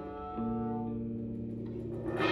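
Live music of long, held notes from a bowed viola and electric guitar, with a new lower note coming in about half a second in.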